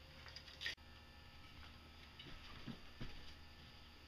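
Near silence: faint steady room hum with a few soft clicks.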